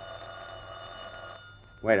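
A telephone bell rings once for about a second and a half, a sound effect in an old-time radio broadcast recording. A man's voice starts to speak near the end.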